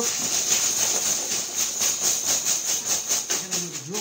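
Numbered plastic draw tokens rattling as they are shaken in a fabric bag, a continuous rattle with a rapid, even shaking rhythm.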